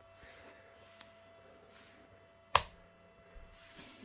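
Quiet room tone with a faint steady tone underneath, broken once about two and a half seconds in by a single sharp click of a switch or button on the tube clock's front panel.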